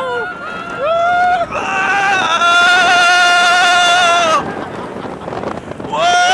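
Roller coaster riders yelling on the ride: a short high yell about a second in, then a long held yell of about two seconds, with wind rushing over the microphone.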